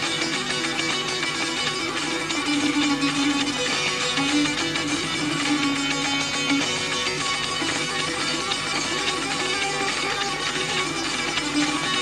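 Solo Kurdish tanbur, its strings strummed rapidly and continuously with the right-hand fingers, a busy melody moving over a steady low drone string.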